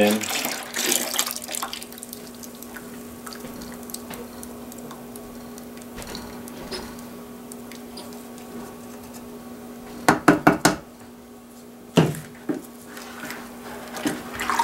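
Acid solution poured from a plastic measuring cup into a can of salt water, a splashing trickle over the first couple of seconds. Later, a quick run of sharp knocks about ten seconds in and one more knock about two seconds after.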